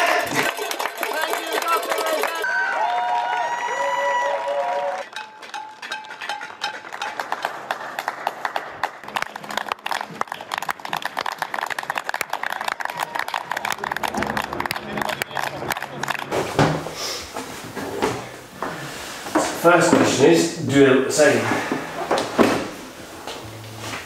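News-broadcast audio laid over the picture: music and voices at first, then many people clapping and cheering in the street for about ten seconds, then voices again near the end.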